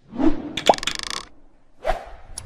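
Cartoon sound effects in an animated logo intro: a short pitched pop about two-thirds of a second in, followed by a quick run of ticks and then a swoosh near the end.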